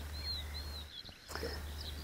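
Faint outdoor background with a few thin, high bird chirps; the background drops out briefly about a second in.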